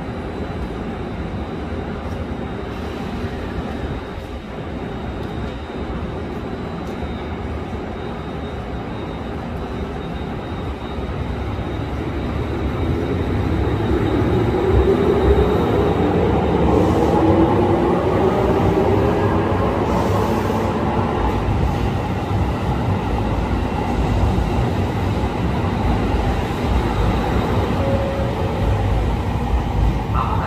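JR Kyushu 787-series electric express train pulling out of the station. A steady hum while it stands. From about twelve seconds in it grows louder as its traction motors give a whine that rises in pitch, then carries on with a steady rumble as the cars roll past.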